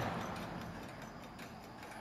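Antique Japanese spring-wound mechanical pendulum wall clock ticking faintly as its movement runs.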